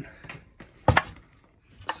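A sharp click on plastic, two knocks in quick succession a little under a second in, with a few faint ticks before it, as hands work at the plastic front panel of an electric scooter.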